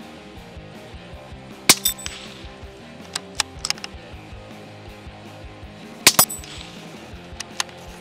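Two suppressed shots from a .17 HMR Tikka T1X UPR bolt-action rifle, about four seconds apart. Each is followed a fraction of a second later by the ringing ping of a steel gong being hit. Light metallic clicks of the bolt being cycled come between and after the shots, over background music.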